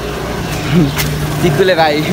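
A motor vehicle engine running steadily nearby, a low even hum, with brief voices over it.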